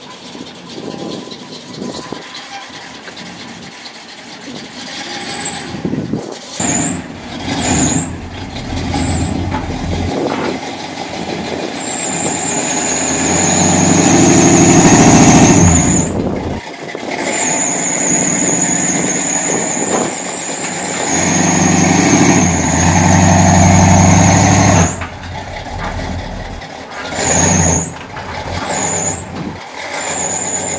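Box Chevy Caprice's engine revving in two long surges as the car is driven up the ramps onto a flatbed car trailer, with a high, wavering squeal over the revs.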